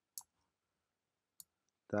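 Two short, sharp clicks about a second apart, from a computer mouse button being pressed to grab and drag points on screen.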